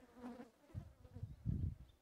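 A fly buzzing close to the microphone, a faint wavering hum, with a few low bumps in the second half.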